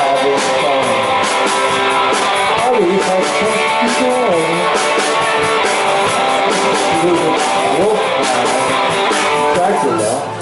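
A live rock-and-roll band playing: hollow-body electric guitar, electric bass and a drum kit, with steady drum hits driving the beat.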